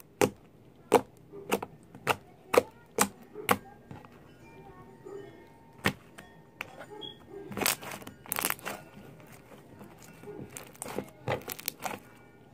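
Hands pressing and working a lump of white slime on a tabletop. There is a quick run of sharp clicks about twice a second at first, then longer squelching sounds as the slime is stretched and folded, and a few more clicks near the end.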